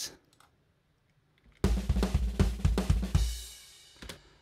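UJAM Virtual Drummer BRUTE virtual rock drum kit, 'Crossover Dude' style, playing a short drum phrase: a quick run of kick and snare hits with cymbals starting about a second and a half in, ending with a cymbal ringing out and fading.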